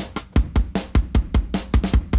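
Programmed drum-and-bass drum groove from a Groove Agent preset looping: fast kick, snare and hi-hat hits in a steady rhythm, played through the oeksound Bloom adaptive tone shaper while its band levels are adjusted.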